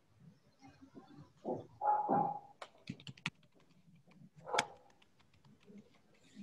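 A dog barking in short bursts in the background, a few barks about two seconds in and one more near the end, with a brief run of keyboard clicks in between.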